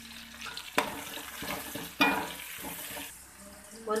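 Sliced onions, curry leaves and green chillies sizzling in hot oil in a kadai while a perforated metal ladle stirs them. There are two sharp, louder moments about one and two seconds in, each trailing off into the sizzle, and the sound is quieter near the end.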